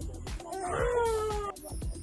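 A baby's drawn-out vocal squeal, rising and then gliding down for about a second before cutting off abruptly, over background music with a steady beat.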